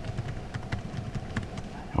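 Typing on a computer keyboard: a run of separate, light key clicks.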